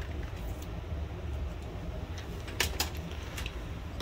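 Low steady room hum with a few faint clicks and taps in the second half.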